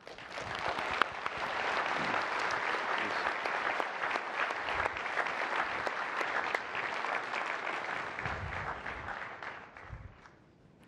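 Audience applauding at the close of a talk, swelling up over the first second or two, holding steady, and dying away near the end.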